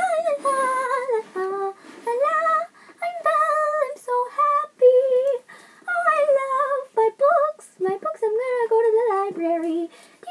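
A girl singing unaccompanied in a high child's voice, a melody of held and gliding notes in short phrases with brief pauses between them.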